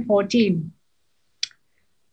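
A woman's sentence ends early on, then a single short, sharp click about one and a half seconds in, from a computer mouse while a document is being scrolled.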